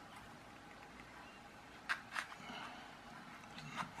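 Steel paperclip wire being bent by hand: two light clicks about a quarter of a second apart, followed by faint handling sounds and another small click near the end.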